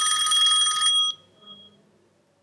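A phone ringing with a steady, high ringtone that cuts off suddenly about a second in as the call is answered.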